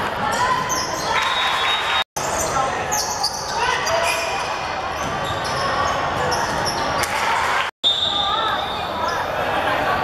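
Basketball game sound in a large gym: a ball bouncing on the hardwood floor and players' and spectators' voices echoing in the hall. The sound drops out briefly twice, about two seconds in and near the eight-second mark.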